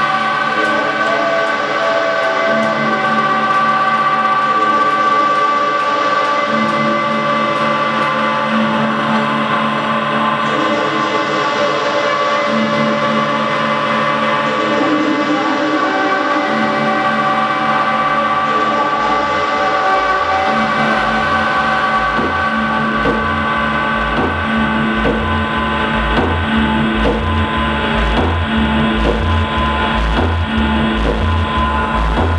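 Electronic dance music from a deep tech / tech house DJ mix: layered, sustained synth chords and drones, with a steady low kick-and-bass beat coming in a bit over halfway through.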